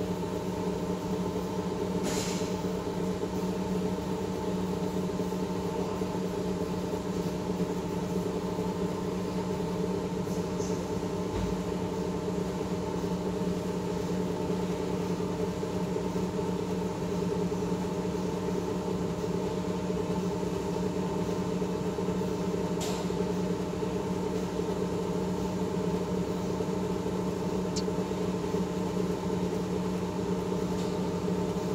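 Lenoxx AFO2500 25-litre air fryer oven's circulation fan running on with a steady hum after the oven is switched off: its cool-down run before it shuts itself off. A few faint clicks sound over the hum.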